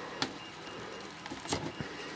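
Faint handling noise of fingers picking at and peeling a strip of white felt off a small mouth piece, the felt pad that stops the mouth clacking shut. Between the light scratching come a few small clicks, one just after the start and two about a second and a half in.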